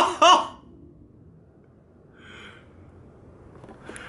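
A man laughing for about half a second, then low room noise with a faint short tone about two seconds in; just before the end, a click and rustle as the camera is handled.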